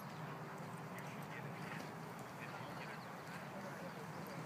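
Quiet outdoor ambience with faint, short bird calls scattered through it.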